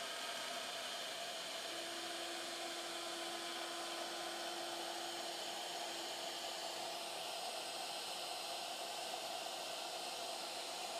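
Shaper Origin handheld CNC router's spindle running steadily as an 8 mm long-reach bit cuts a pocket in oak.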